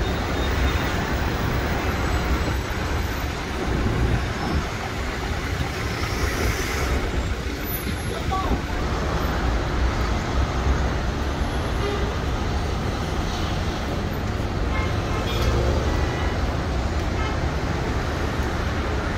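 Busy city road traffic: a steady rumble of many cars and buses on a congested multi-lane road.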